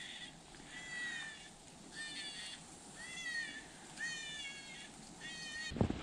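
A predator call sounding a string of high, wavering distress cries, about one a second, each about half a second long, used to lure in coyotes.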